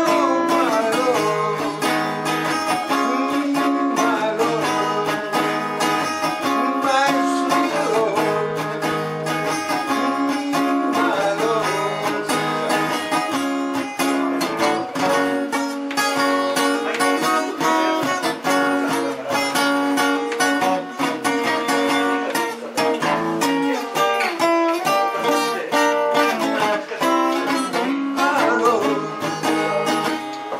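Steel-string cutaway acoustic-electric guitar strummed in a steady rhythm, with a man singing into the microphone over it.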